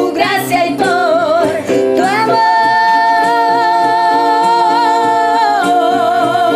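Two women singing a worship song together over instrumental accompaniment, holding one long note from about two seconds in until near the end.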